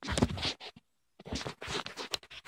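Handling noise from the recording phone: fingers rubbing and scratching over the microphone in irregular bursts, with a short quiet gap about halfway through.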